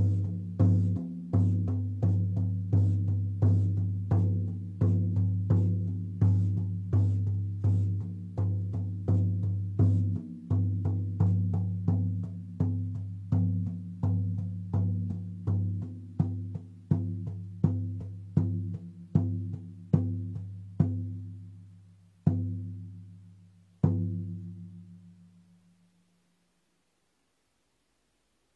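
Large hand-held frame drum struck with a fleece-covered beater in a steady, even beat of about one and a half strokes a second, each stroke a low ringing tone. Over the last few seconds the beat slows and softens to a few widely spaced strokes, and the final one rings away to silence.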